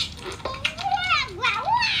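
A young child's wordless voice, babbling and fussing in a high pitch that slides up and down.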